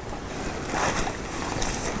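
Wind buffeting the microphone, with a steady low rumble and a brief louder rustle a little under a second in.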